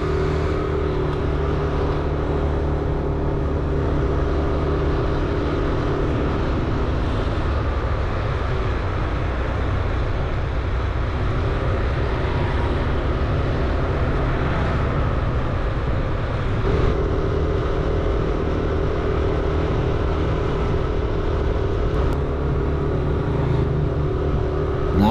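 Motorcycle engine running steadily at an easy riding pace, with an even rush of road and air noise beneath it. The engine's hum weakens in the middle and comes back stronger about two-thirds of the way through.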